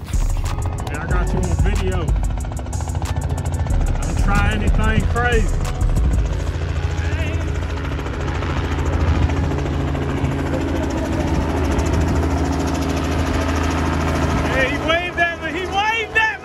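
A small light helicopter flying overhead: a steady low drone of rotor and engine, with a rapid rotor beat strongest in the first few seconds.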